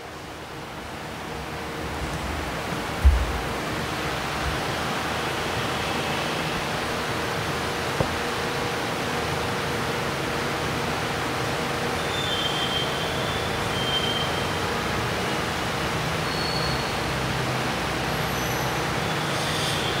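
Steady background noise with no speech, building up over the first couple of seconds and then holding level, broken by one low thump about three seconds in and a short click near eight seconds.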